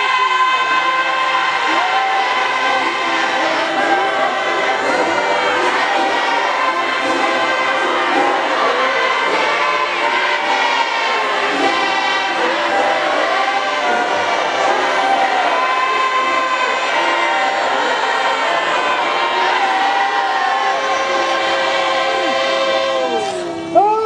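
A large congregation singing a hymn together in many voices, with long held notes and no break. The singing dips briefly near the end.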